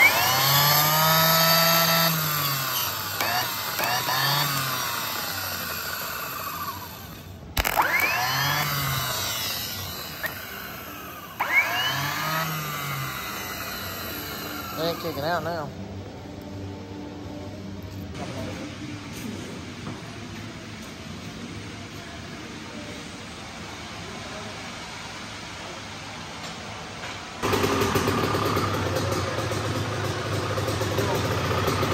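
Automotive starter motors bench-tested off the truck with jumper cables: several short runs, each opening with a sharp click and a whine that rises as the motor spins up and falls away as it coasts down once the power is cut. The pinion is kicking out and turning.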